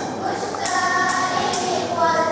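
A group of girls singing together, with tambourines struck about twice a second keeping the beat.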